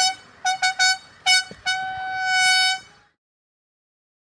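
A military bugle call: several short notes on one pitch, then one long held note that ends about three seconds in.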